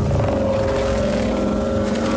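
A loud, low rumbling drone with a few steady sustained tones above it, the sound of an anime battle scene's soundtrack.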